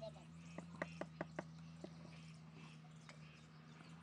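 A brick hammer tapping bricks down into wet cement mortar: five quick, sharp taps about a fifth of a second apart, then one more, over a steady low hum.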